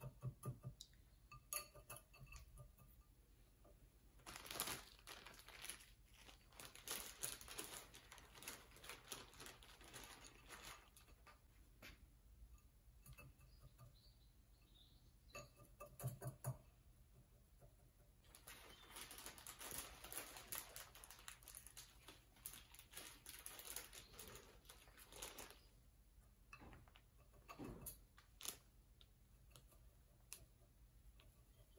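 A chopstick working bonsai soil into a ceramic pot around a root ball: faint gritty scratching and light clicks in spells of several seconds, grains of soil scraping against the pot.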